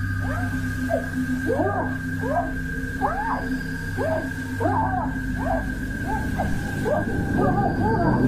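Eerie backing soundtrack: steady droning tones under a run of short wailing calls that rise and fall in pitch, about two a second.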